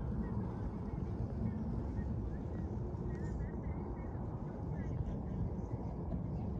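Wind buffeting the microphone outdoors: a steady low rumble, with faint short high chirps over it.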